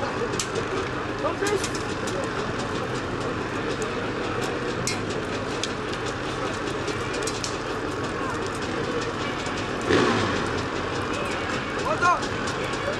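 Motorcycle engines and a crowd's voices at a hill climb, a dense steady noise scattered with short clicks, with a louder burst about ten seconds in.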